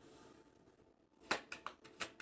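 About a second of quiet room, then four short, sharp clicks over the last second as a deck of tarot cards is handled in the hands.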